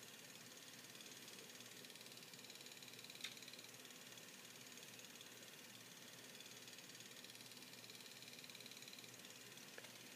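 Near silence: steady faint room hiss, with one faint click about three seconds in.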